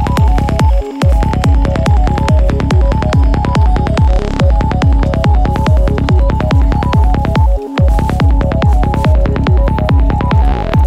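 Psytrance music: a steady kick drum under a rolling bassline and a repeating plucked synth figure. The bass drops out briefly twice, about a second in and again late on.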